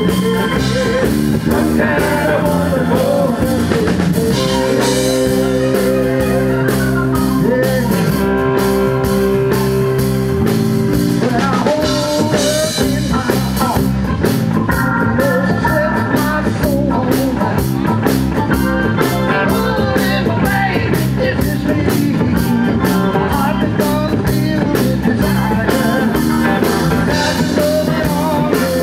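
A live band plays at full volume on acoustic and electric guitars, keyboard and drum kit. Chords are held for a few seconds early on, then a steady drum beat drives the second half.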